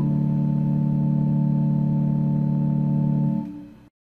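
Organ holding a final chord at the close of a psalm accompaniment, its upper line having just stepped down onto the last note. The chord fades about three seconds in and cuts off just before the end.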